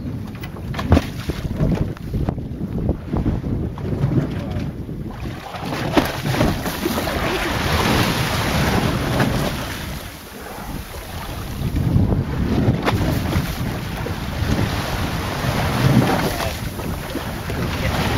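Wind buffeting the microphone over the rush of the open sea, swelling and easing in gusts, with a brief lull about ten seconds in.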